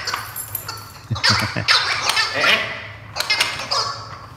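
Wobble Wag Giggle dog ball's gravity-operated noisemaker giggling in several short warbling bursts as the ball is jostled.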